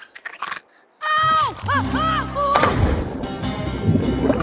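Animated-film soundtrack: a few soft clicks, then loud music starts abruptly about a second in. A rushing splash of water comes in around the middle and carries on under the music.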